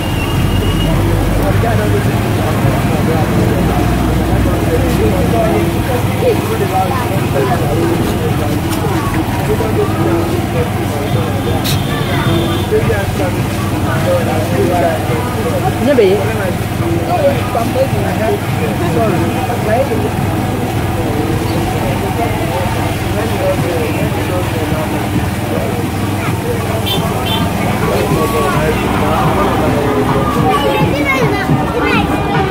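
Busy open-air market ambience: many overlapping background voices and chatter over a steady low rumble of road traffic and engines. A short high-pitched tone sounds about twelve seconds in.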